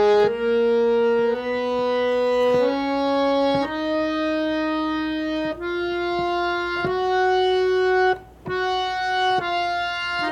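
Harmonium playing the F sharp major scale slowly, one reed note at a time, each held about a second, climbing step by step to the upper F sharp. A brief break comes near the end, then the scale starts back down.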